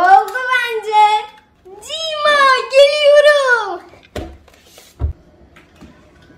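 A young girl's voice in two long, sing-song gliding phrases, followed by two dull thumps about a second apart.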